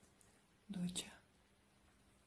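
A woman's voice, low and hushed, saying one short word about a second in, ending in a hiss. Otherwise only quiet room tone.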